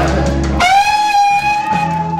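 Live electric blues recorded to cassette: an electric guitar bends up into one long held note about half a second in, over the band's bass.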